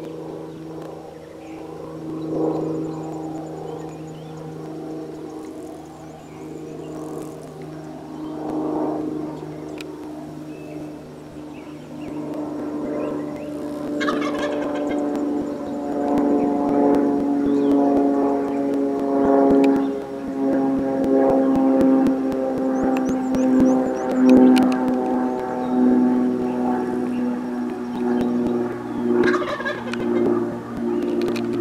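Wild turkey gobbling, over a bed of steady, sustained tones that grows louder about halfway through.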